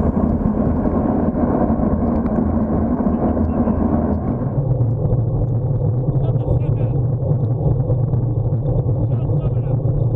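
Wind and road rumble on a bicycle-mounted camera microphone while riding at about 30 km/h, with a car engine running close by; a steady hum in it drops in pitch about four and a half seconds in.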